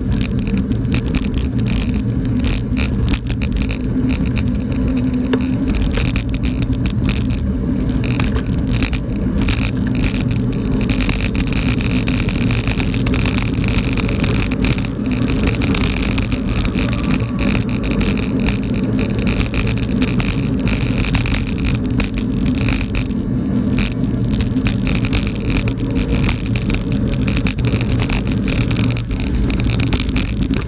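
Mountain bike rolling fast over a rough dirt road, heard from a camera mounted on the handlebars: a steady rumble of wind on the microphone, with constant clicks and rattles from the tyres and bike over the bumpy surface. A brighter hiss of tyres on loose grit joins in about ten seconds in.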